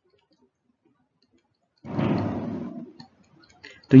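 A single breathy exhale into a close microphone about two seconds in, fading out over about a second, followed by a few faint clicks.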